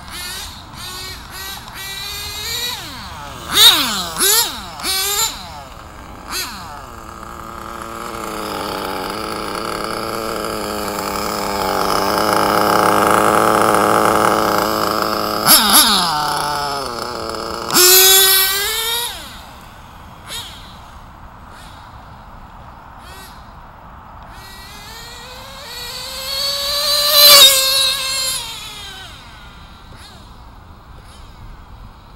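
Nitro engine of a Kyosho GT2 RC car revving hard as the car drives around, its high whine rising and falling in pitch over several passes, with one long stretch held at high revs in the middle.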